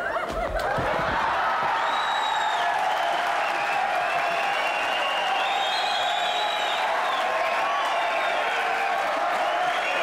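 Studio audience laughing and applauding, building up in the first second and then holding steady.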